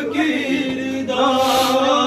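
A man chanting a noha, an Urdu mourning lament. He sings short broken phrases at first, then holds a long, steady note from about halfway through.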